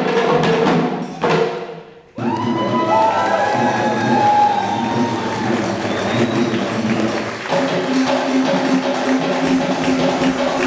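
Live Sri Lankan traditional dance music: drums played in a dense, fast rhythm with a held, slightly wavering melodic line over them. The sound drops away briefly about two seconds in and comes straight back.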